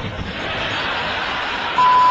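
A car engine running hard under load as it climbs a hill, a steady noisy sound, with a short steady high beep near the end.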